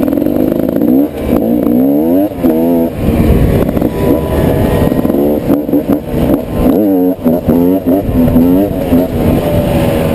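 Beta RR300 two-stroke enduro motorcycle engine revving up and down again and again as it is ridden, the pitch rising and falling with brief drops when the throttle closes.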